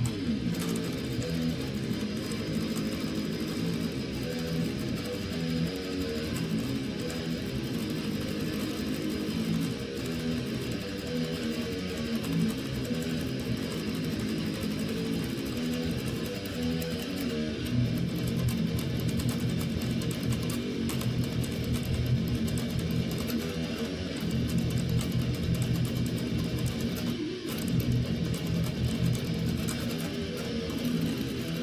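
Electric guitar playing a continuous metal riff of low, changing notes without a pause.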